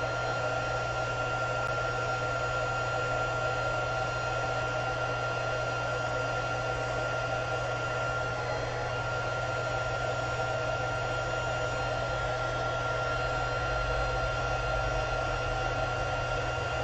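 Handheld craft heat tool running steadily, blowing hot air onto snowfall accent puff paint to dry it and make it puff up. A constant rush of air with a thin, steady whine over a low hum.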